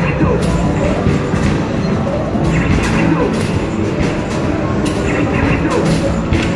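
Noisy arcade din: the music and electronic effects of basketball arcade machines over a babble of voices, with the thud of a basketball hitting the backboard and rim about every second and the rumble of balls rolling back down the return ramp.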